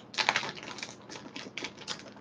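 Plastic wrapper of a bag of Pågen gifflar cinnamon buns crinkling as it is opened and handled by hand: quick, irregular crackles and clicks.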